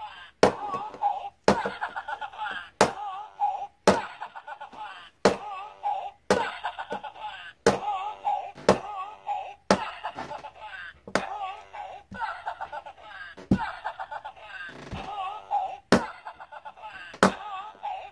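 Battery-powered Raving Rabbids tuba-rabbit toy knocked down on a table over and over, about once a second. Each knock sets off a short burst of electronic tuba sounds and laughing from its small speaker.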